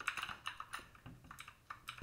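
Computer keyboard keystrokes: a quick, irregular run of key clicks, densest in the first second and sparser after.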